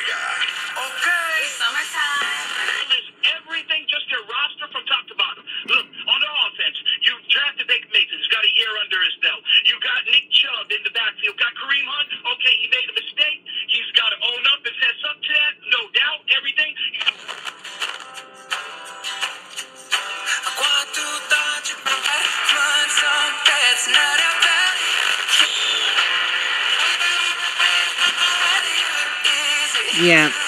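FM broadcast stations playing through the small speaker of an AVI Radio KST-50 FM/SCA receiver as it is tuned up the band. The sound changes abruptly about three seconds in and again around seventeen seconds, going from a thin, narrow-sounding talk station to music with singing.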